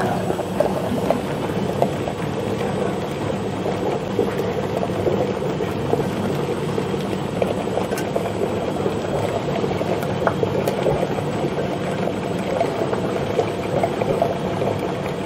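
Emery Thompson 12-quart batch freezer running, its dasher churning the ice cream mix in the freezing barrel. The sound is a steady churning with a low hum and scattered light clicks throughout.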